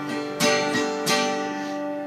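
Cutaway acoustic guitar strummed, chords ringing on between strokes, with two strong strums well under a second apart and a lighter one between them.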